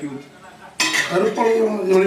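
Stainless-steel pot and utensils clinking and clattering, with a sharp metallic clatter a little under a second in.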